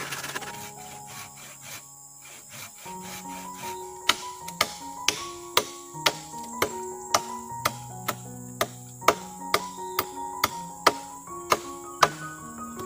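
A machete chopping into a wooden post, sharp blows about two a second from about four seconds in, over background music. In the first second or so a handsaw rasps through wood.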